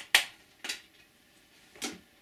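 A few sharp clicks of handling as a film is put into a player, two in the first second and another near the end.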